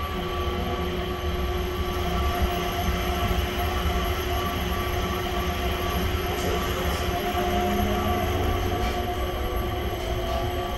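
Changi Airport Skytrain, a driverless people mover, heard from inside the car while it runs between terminals: a steady low rumble with a few steady whining tones held through.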